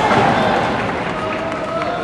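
A long shout at a karate kumite bout, held for a couple of seconds and sliding slowly down in pitch, over the hall's general noise. A few sharp clicks come near the end.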